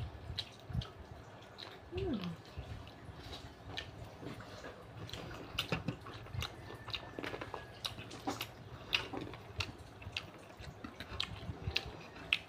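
A person chewing and eating chicken rendang with their fingers: soft, scattered wet clicks and smacks of chewing.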